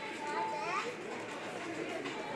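Indistinct background voices and children's chatter, with a high child's voice rising in pitch about half a second in.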